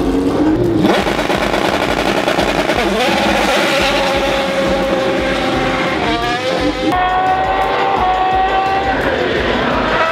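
Race car engine at full throttle, its pitch climbing and stepping back with each upshift. A steady bass beat of background music runs underneath.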